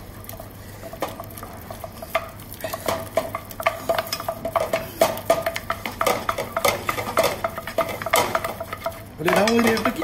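Wooden spatula beating choux dough in a stainless-steel saucepan, a fast run of scrapes and knocks against the pan as an egg yolk is worked into the paste. Speech starts near the end.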